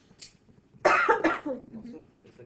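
A person coughing, two loud harsh coughs close together about a second in, trailing off into a short voiced sound.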